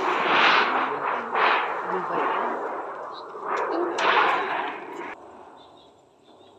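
A large, thin, shiny sheet flexing and wobbling as it is carried and held up, giving a rattling noise that swells and fades several times and stops about five seconds in.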